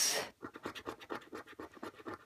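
Coating on a bingo scratchcard's caller's-card panel being scratched off in a quick run of short, quiet scrapes, uncovering the first called number.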